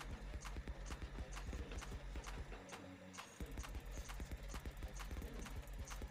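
Faint, irregular clicking and tapping, several clicks a second, over a low steady hum.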